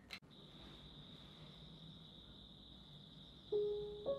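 A faint steady high-pitched tone with a short click at the start, then a single piano note struck near the end as background piano music begins.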